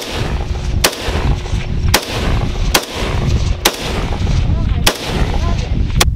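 AK-pattern semi-automatic rifle fired in single shots, about six sharp shots roughly a second apart.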